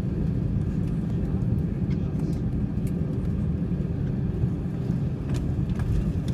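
Steady low rumble inside an airliner's cabin as the plane rolls along the ground after landing: engine noise and wheel rumble heard through the fuselage.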